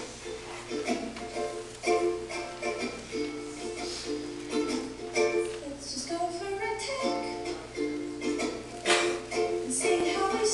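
Recorded song played back over loudspeakers: short plucked-string chords repeating in a steady rhythm, with a voice coming in now and then.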